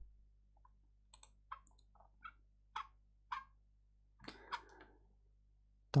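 Faint, irregular clicking of a computer mouse, about seven light clicks over a few seconds, as a long dropdown list is scrolled and picked through. A short soft rustle follows about four seconds in.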